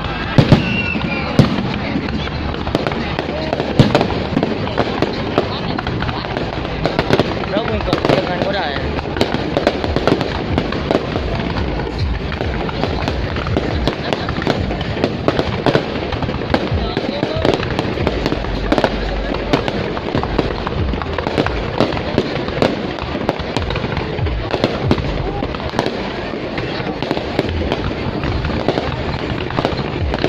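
Aerial fireworks going off without pause: a dense run of bangs, pops and crackle over a continuous rumble. The loudest sharp reports come in the first few seconds.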